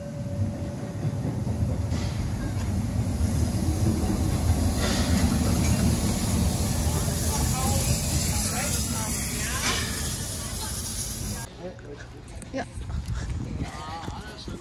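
Narrow-gauge steam locomotive No. 99 4011-5 of the Rasender Roland pulling in alongside the platform: a heavy, close rumble of the engine and wheels with steam hissing. The sound cuts off suddenly near the end.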